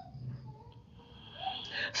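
A pause in a man's speech: faint room tone, then a soft breath drawn in near the end, just before he speaks again.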